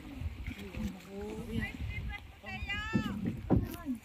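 Indistinct voices of people talking and calling out, with one higher, louder call about two and a half seconds in, over a low uneven rumble.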